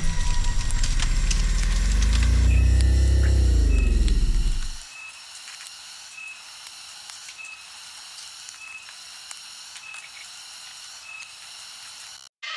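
Horror-style sound effects laid over the footage: a loud, deep drone that rises and then falls in pitch before stopping about five seconds in. After it comes a faint hiss with a short, soft high beep about once a second.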